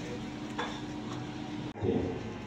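A pause in speech: low, steady hiss of a hall's room tone and sound system with a faint steady hum. Near the end the sound drops out abruptly for an instant.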